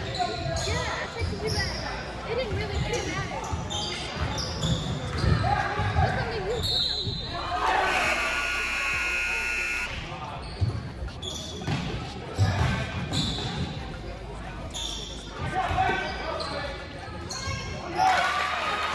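A basketball bouncing on a hardwood gym floor during play, with players' and spectators' voices calling out in the echoing gym. A held tone lasts about two seconds near the middle.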